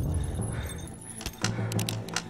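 A quick cluster of sharp metallic clinks and jangles about a second and a half in, over a low steady drone.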